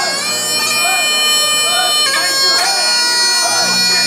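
Highland bagpipes playing, the chanter holding long steady notes over the drones and changing note twice about halfway through. The pipes are sounding a pitch for the acoustic guitar to tune up to.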